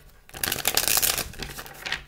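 A deck of tarot cards being riffle-shuffled by hand: a rapid flutter of cards starting about half a second in and running for over a second.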